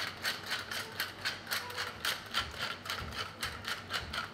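Wooden pepper mill being twisted back and forth, grinding pepper with a rapid ratcheting crackle of about five strokes a second.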